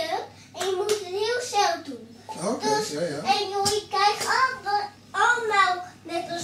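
A young child singing, with some notes held, and a few sharp hand claps or knocks in between.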